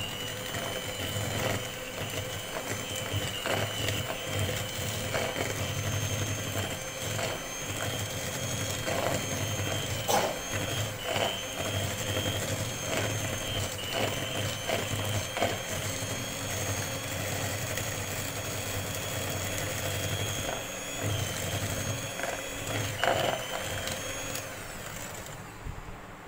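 Electric hand mixer running at a steady, high whine as its beaters churn powdered sugar and oil in a plastic bowl, with occasional knocks. The motor switches off near the end.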